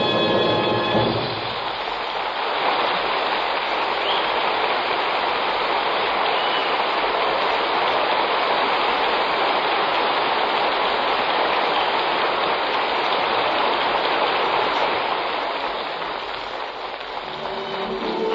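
Audience applauding in an old band-limited radio broadcast recording. It starts as an orchestral piece ends about a second in and dies down near the end.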